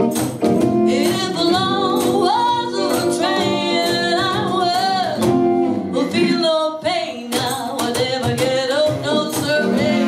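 Live band performance: a woman singing over strummed acoustic guitar, electric guitar, violin and drums.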